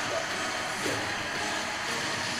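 Audio from a talent-show stage performance playing back: a steady, noisy wash of soundtrack and hall sound at moderate level.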